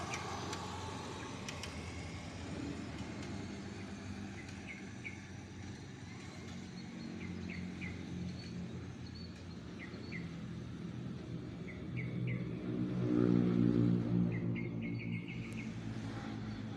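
A motor vehicle's engine hums steadily in the background, growing louder about thirteen seconds in as it passes. Short bird chirps repeat over it.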